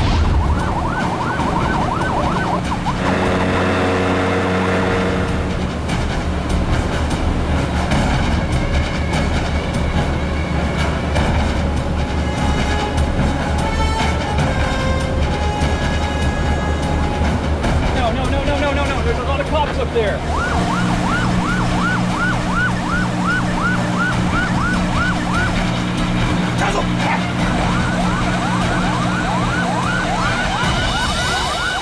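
A police boat siren yelping in fast repeated rising sweeps over a low steady drone. The siren drops out a few seconds in under tense music with a steady pulse, then returns about two-thirds of the way through.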